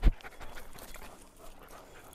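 A sharp thump right at the start, then dogs panting faintly.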